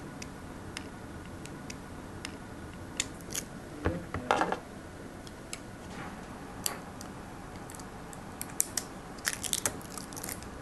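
Small hand-tool snips and plastic crinkling as the thin plastic wrap and filler string are cut away from a stripped cable end. Scattered short clicks, with a louder cluster about four seconds in and a quick run of clicks near the end.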